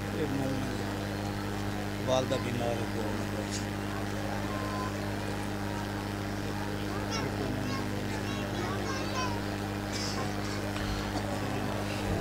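Steady electrical hum from the public-address system, with faint, distant voices of the gathering murmuring now and then beneath it.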